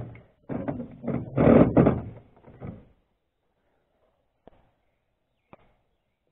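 Clunks, knocks and rattles from handling the outboard motor's housing and linkage parts as a piece is set back down: a sharp click, then a run of knocks over the first three seconds, then two faint clicks.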